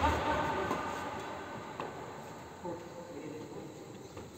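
A badminton racket strikes the shuttlecock at the start, a sharp hit that echoes and dies away slowly in a large indoor sports hall. Faint voices follow near the end as play stops.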